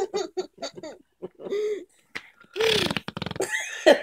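Baby giggling in short bursts, then, about three seconds in, a short buzzing raspberry blown with the lips against a leather couch.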